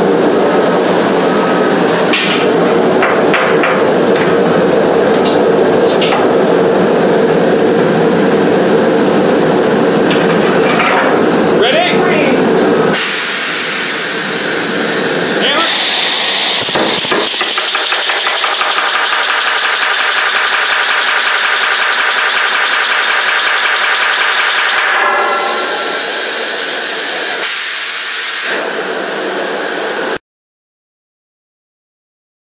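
A loud steady rushing noise for the first dozen seconds; then, about fifteen seconds in, an 1880 Allen portable pneumatic riveter runs for about ten seconds, a rapid, continuous working on a hot 3/4-inch rivet, forming its head to fasten a smokebox to a steam-locomotive boiler.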